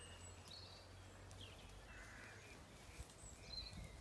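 Near silence: faint outdoor ambience with a few faint, short, high-pitched bird calls, and a few soft low bumps near the end.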